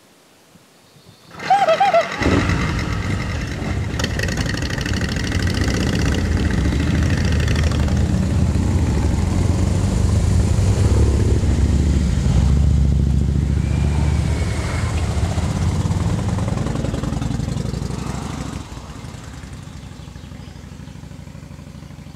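Several motorcycle engines starting up together about a second and a half in, then running as the bikes pull away, the sound fading near the end.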